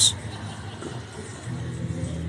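Street traffic noise: a low rumble, with a steady engine hum coming up about one and a half seconds in.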